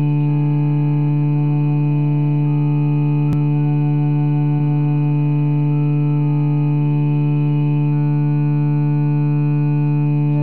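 Computer-synthesized playback of a five-part choral arrangement, a learning track for the bass part: held chords of steady, unwavering tones with the bass line loudest, the chord shifting about every two seconds. One short click sounds a little over three seconds in.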